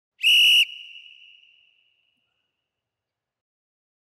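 A boxing timer's ten-second warning signal before the next round: one short, loud, high whistle blast with a ringing tail that fades out within about a second and a half.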